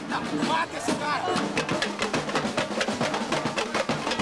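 Carnival street-band samba percussion: drums playing a fast, steady beat of sharp strokes that comes in strongly about a second and a half in, with voices singing or shouting over the start.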